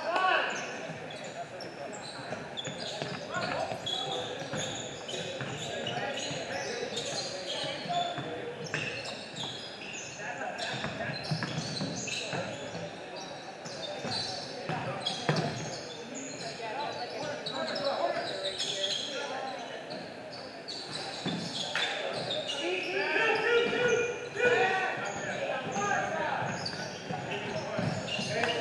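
Basketball game in a gym: the ball bouncing on the hardwood court and players' voices calling out, with the echo of a large hall.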